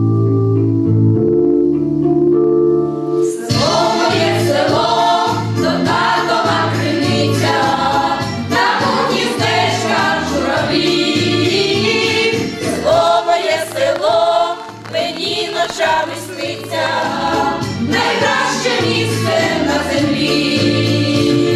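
A women's folk choir singing together over instrumental backing music. The first few seconds are the instrumental introduction alone, and the voices come in about three and a half seconds in.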